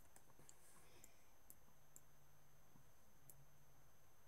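Faint computer mouse clicks, about five scattered single clicks over near-silent room tone with a faint low hum.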